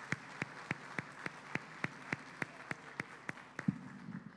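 An audience applauding, with one set of hands clapping evenly about three times a second above the rest. The clapping stops shortly before the end.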